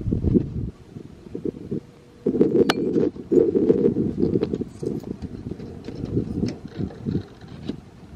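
Wind buffeting the camera's microphone in gusts, a low rumble that is loudest from about two to five seconds in, with a few light clicks and steps over it as the carrier walks.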